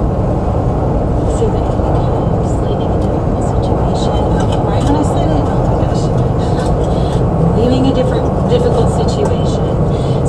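Steady car engine and road noise with a low hum, heard as from a moving vehicle. A faint voice comes in about halfway through.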